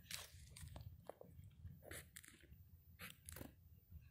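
Faint scratching of a ballpoint pen drawing tally marks on notebook paper: a handful of short, scratchy strokes spread through the few seconds.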